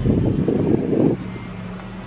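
Car cabin noise with no speech: a low rumble for about the first second, then a quieter steady low hum from the vehicle.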